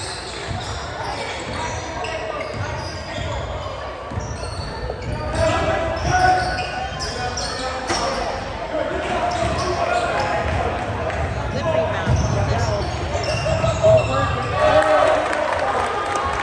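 Basketball bouncing on a hardwood gym floor during play, the thuds echoing in the hall, under the chatter and calls of spectators' voices that grow busier after a few seconds.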